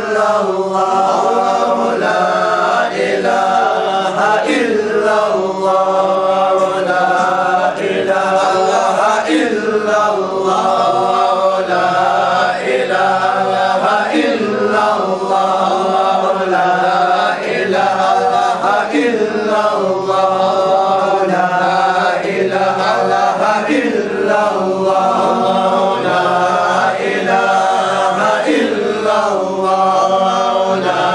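A group of men chanting Qadiriyah dhikr in unison, a short phrase repeated over and over in a steady rhythm, about once every one and a half seconds.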